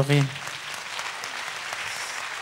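Congregation applauding, a steady even patter of many hands clapping.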